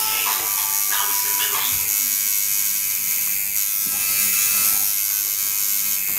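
Electric tattoo machine buzzing steadily as it needles skin.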